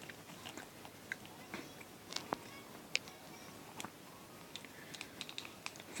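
Quiet room tone with a handful of faint, sharp clicks and ticks scattered irregularly through it.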